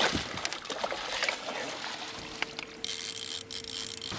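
Water splashing and trickling as a large striped bass thrashes at the surface and is scooped into a landing net at the side of a boat.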